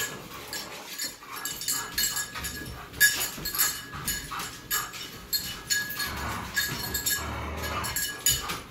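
Dogs scuffling in a game of tug, with scattered clicks and jingles from claws on a tile floor and collar tags. A dog grumbles low near the end.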